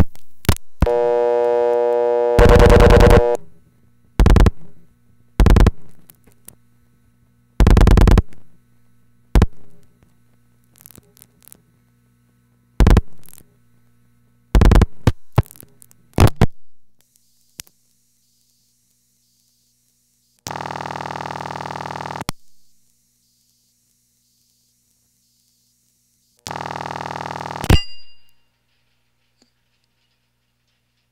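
A call through a Bell System No. 1 Crossbar switch, heard on the telephone line. A buzzy dial tone comes first, then a series of separate bursts as the number is dialed and pulsed through the sender. Two bursts of ringback tone of about two seconds each follow, and the second is cut short by a click when the called line answers.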